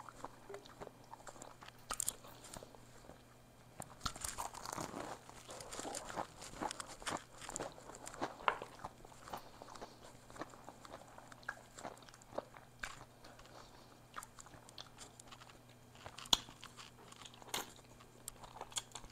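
Close-miked eating: crunching bites into a fried egg roll and chewing, heard as many short crackles and clicks. The crunching is densest about four seconds in, with a few sharp single clicks near the end.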